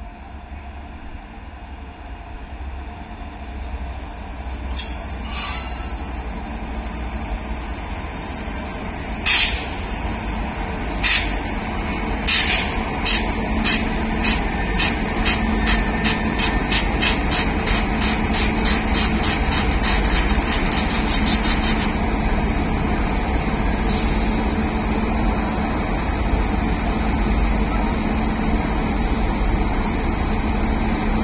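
WAP7 electric locomotive drawing slowly in, with a steady hum over a low rumble that grows louder as it nears. A fast run of sharp clicks comes in the middle.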